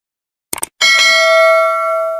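Subscribe-animation sound effects: a quick double mouse click about half a second in, then a notification bell chime from just under a second in, ringing steadily with several tones and slowly fading.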